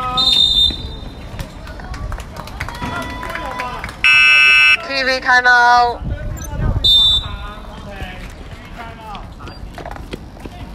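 Referee's pea whistle blowing short high blasts about half a second in and again near seven seconds, stopping play. Around four seconds in, a loud electronic buzzer sounds for under a second, and voices shout just after it.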